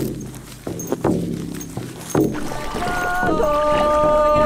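Large frame drum struck with a beater in a slow beat, each stroke ringing low. About two and a half seconds in, a woman's voice comes in singing a long held note that steps down in pitch.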